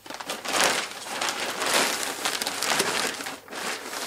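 Large, thick plastic packing bag crinkling and rustling in continuous surges as it is opened and pulled down off closed-cell foam packing.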